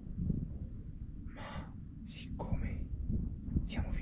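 Soft whispered speech with breathy hiss sounds, over a low rumble.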